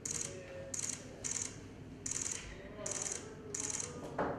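Camera shutters firing in short rapid bursts, about six bursts in four seconds, over a low murmur of voices.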